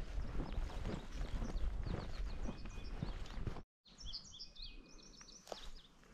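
Songbirds chirping over footsteps on a grassy trail and a low rumble of wind on the microphone; after a brief cut about three and a half seconds in, the rumble drops away and a rapid series of high bird chirps comes through clearly.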